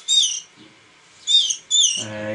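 Canary chick (about three weeks old) giving short, high begging chirps with its beak open while being hand-fed with a toothpick: three chirps, each a quick downward glide, one at the start and two close together in the second half.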